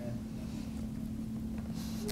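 Quiet room tone: a steady low hum with a faint rumble beneath it, and no speech.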